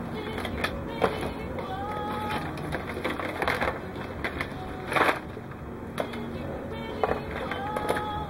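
Scattered clicks and rustling of hookup wire being handled and rummaged through in a box of loose wires, over faint background music.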